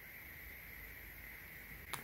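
Quiet room tone: a faint steady hiss, with a single small click just before the end.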